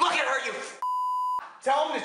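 Speech cut off by a steady, flat electronic beep about half a second long, a censor bleep laid over a word, with speech resuming right after.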